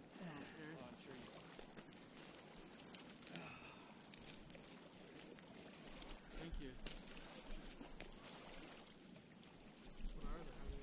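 Small lake waves lapping on a pebble shore, faint and steady, with voices of people talking some way off.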